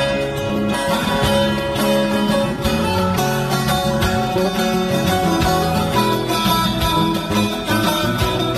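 Instrumental break in a Turkish folk song (türkü) backing track: a melody of picked notes on plucked strings over a steady bass line, with no singing.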